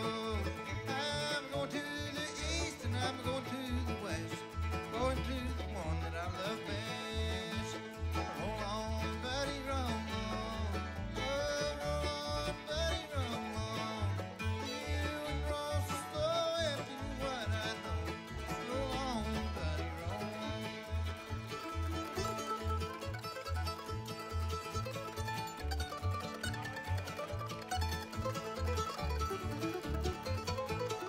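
Bluegrass band playing acoustic instruments: fiddle, acoustic guitar, mandolin, five-string banjo and upright bass, with the bass notes giving a steady, even beat.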